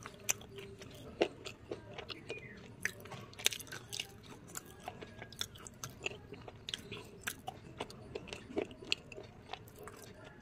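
Pieces of Swastik slate pencil being chewed with the mouth closed: irregular sharp crunching clicks, a few a second, over a soft grinding.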